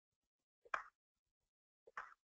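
Near silence with two short, faint clicks, one a little under a second in and another near the end.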